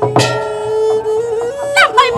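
Traditional Khmer Lakhon Bassac theatre ensemble playing live: one steady held note runs under a melody of held tones, with sharp percussion strikes about a fifth of a second in and again near the end, where the pitch slides.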